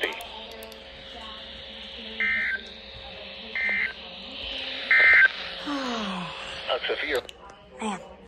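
Midland NOAA weather alert radio sending three short buzzing data bursts over a faint hiss: the SAME end-of-message code that closes an emergency alert broadcast.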